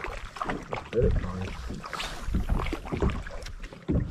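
Wind rumbling on the microphone aboard a bass boat, with scattered small knocks and a brief muffled voice about a second in.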